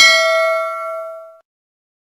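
Notification-bell chime of a YouTube subscribe animation: one bell-like ding that rings and dies away after about a second and a half.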